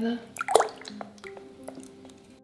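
Wooden stir stick stirring limewash paint in a plastic bucket: wet slopping with a few sharp clicks, loudest about half a second in, then fainter.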